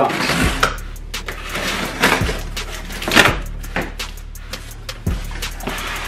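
Music with a steady low bass underlay, over irregular scrapes, rips and rustles of a cardboard shipping box being slit open along its tape and its flaps pulled back.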